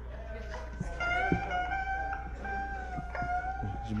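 A guitar played softly, holding long notes, with a few faint knocks.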